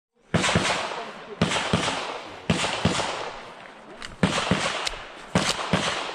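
Handgun gunfire on a shooting range: about five rapid strings of two or three shots, the strings roughly a second apart, each shot followed by a decaying echo.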